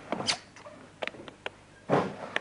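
Several short, sharp knocks and clicks at irregular intervals, the loudest near the end.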